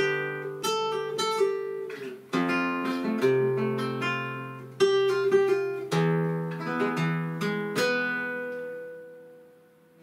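Nylon-string flamenco guitar playing a soleá falseta: ascending and descending arpeggios with several louder struck chords. The last notes ring out and fade away near the end.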